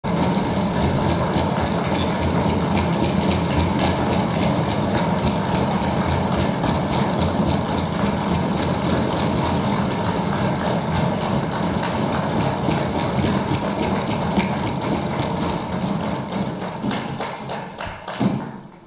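A chamber full of legislators applauding: a dense, steady clatter of many hands clapping that fades toward the end.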